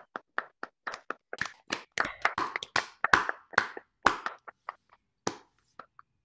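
Applause from the participants of a video call: scattered, uneven hand claps that grow denser in the middle and thin out near the end, heard through the call's audio.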